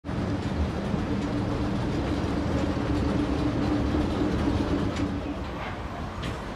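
A New Orleans St. Charles streetcar running on its rails at close range: a steady low rumble with a steady hum that eases off a little near the end, with a few faint clicks.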